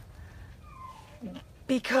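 A dog giving a faint, short whine that falls in pitch, about a second in, against a low background hum.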